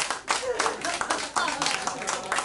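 Small audience clapping, a dense irregular patter of hand claps, with voices over it.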